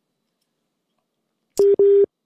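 Telephone line tone: after a silent line, two short beeps of one low pitch come back to back near the end. This is the phone call to the correspondent failing, put down to a network problem.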